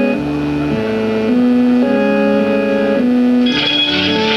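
Two electric organs playing slow, sustained chords that shift every half second to a second or so. A brighter, fluttering high layer joins near the end.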